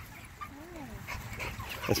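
A single soft animal call that rises and then falls in pitch, about half a second in, over faint yard noise.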